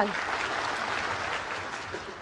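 Snooker audience applauding, starting suddenly and fading away over the last half second.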